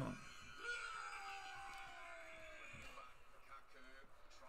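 Faint voices in the background after a man's loud shout cuts off at the very start, with a falling, drawn-out vocal sound about a second in.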